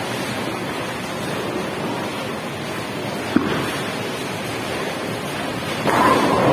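Bowling alley noise: a steady rumble of balls rolling and lane machinery, with one sharp knock about halfway through. A louder burst of noise comes in just at the end as the bowler releases his ball.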